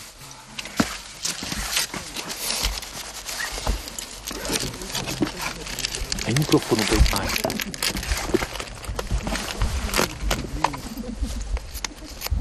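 Rustling and clicking of first-aid supplies and clothing being handled, with low, indistinct voices at times.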